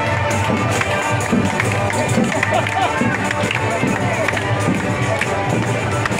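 Folk band playing a tune with steady held notes and frequent tambourine and drum strokes, with the talk of a crowd around it.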